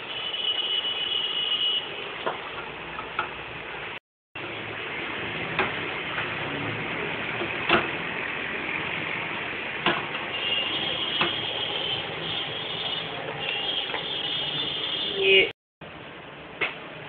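A ladle stirring a thick wheat-starch paste in an aluminium pot, scraping through the paste with sharp clinks against the pot about every one to two seconds. It is kept moving so the paste doesn't stick to the bottom or form lumps. A thin high tone sounds early on and again through the second half.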